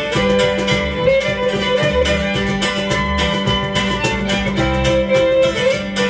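Live acoustic string band playing an instrumental fiddle tune: a bowed fiddle carries the melody over strummed mandolin and guitar, with a cajon keeping a steady beat.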